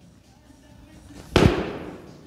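Feet landing hard on rubber gym flooring as a lifter drops into a split-jerk catch, the barbell held overhead: one sharp thump about one and a half seconds in, which quickly dies away.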